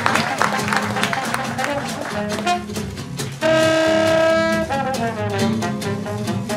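Traditional jazz band playing, with a washboard keeping a steady ticking rhythm under trombone, trumpet, double bass and guitar. About three and a half seconds in, a horn holds one long note for over a second.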